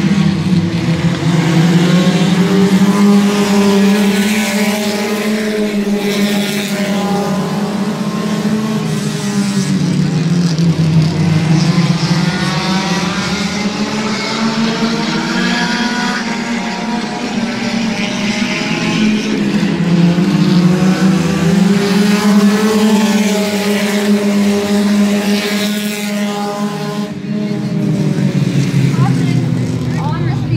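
A pack of compact-class race cars running laps on an oval, their engines revving up and down in pitch. The sound swells each time the field comes past, about every ten seconds.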